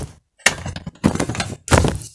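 Handling noise from a hand-held camera being lifted and moved: a sharp click, then a knock about half a second in with scraping that fades, and another rub near the end, close on the microphone.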